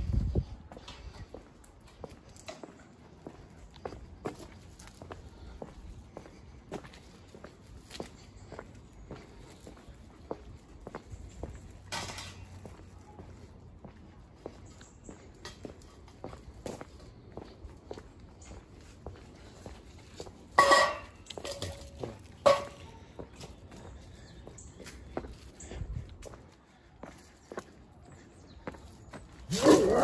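Footsteps of someone walking on paved ground at a steady pace, about two steps a second. Two louder short sounds come about two-thirds of the way in, and a dog starts barking at the very end.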